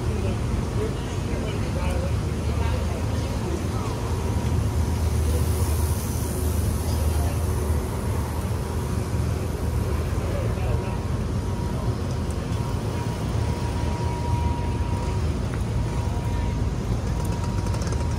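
Busy city street ambience: a steady low rumble of traffic, with the voices of passing pedestrians.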